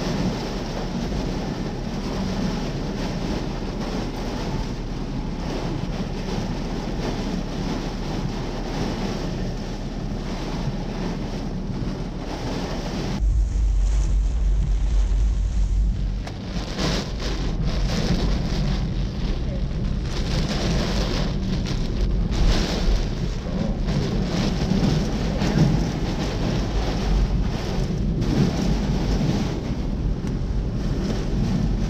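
Hurricane-force tropical cyclone wind and heavy rain lashing a car, a continuous loud rush of wind and rain. About thirteen seconds in it grows louder, with a deep rumble of wind buffeting the microphone, then comes in uneven gusts.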